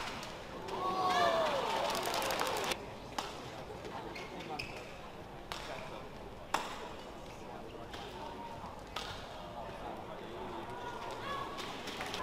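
A badminton rally: rackets strike the shuttlecock with several sharp smacks over the first six or so seconds, with a squealing sound about a second in. Single smacks follow later.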